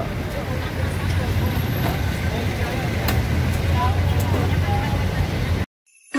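Busy street traffic noise with a steady low engine hum from vehicles and faint voices of a crowd; it cuts off suddenly near the end.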